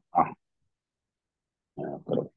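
A man's voice in brief fragments: a short syllable just after the start, then a second and a half of dead silence, then speech resuming near the end.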